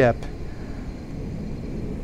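The end of a man's word right at the start, then a steady low background rumble with no distinct events.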